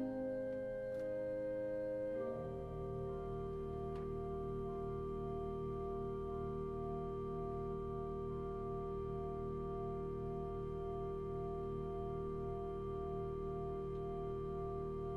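Pipe organ playing a slow, quiet piece. About two seconds in it moves onto a long held final chord over a low pedal note, one note of the chord wavering slowly and regularly.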